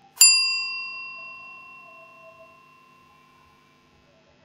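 A single bell ding, the notification-bell sound effect of a subscribe animation, struck once and ringing out, fading away over about three seconds.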